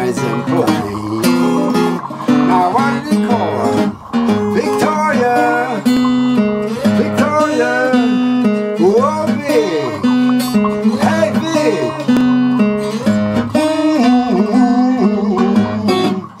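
Instrumental break of an acoustic blues song: guitar chords with a lead line whose notes slide up and down in pitch.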